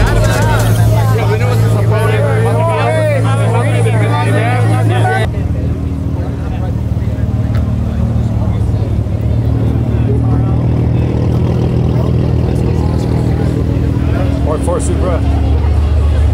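Crowd chatter over a steady low hum, cut off abruptly about five seconds in. A car engine idling follows, a steady low rumble to the end.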